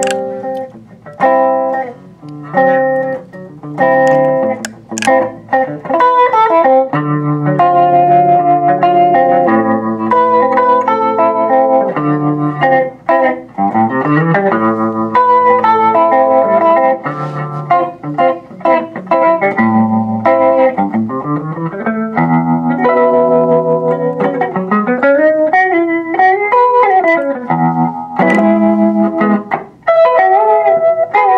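Electric guitar played through a Fender Pinwheel rotary speaker emulator pedal. Short chord stabs for the first few seconds give way to ringing chords, with notes that glide up and down in pitch.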